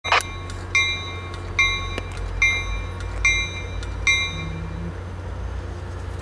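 Locomotive bell of an ACE commuter train ringing as the train gets ready to depart: six evenly spaced strikes a little more than one a second, each ringing on and fading, stopping about four seconds in. A steady low engine hum runs underneath.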